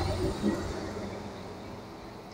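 Intercity coach's diesel engine rumbling low and fading steadily as the coach drives away.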